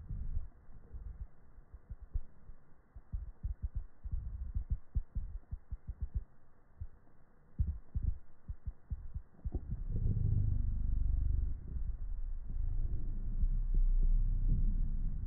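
Irregular soft low knocks and rubbing as hands shift a stack of round magnets on a particleboard base between wooden skewer guides. About ten seconds in, this turns to a steadier low rumble of handling noise.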